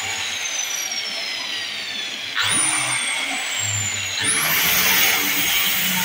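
Handheld electric circular cutter cutting a wooden board. Its high motor whine slowly falls in pitch, then jumps back up sharply twice, about two and a half and four seconds in.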